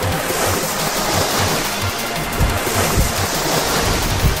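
Steady rush of spraying water from a toy water gun, over background music with a steady beat.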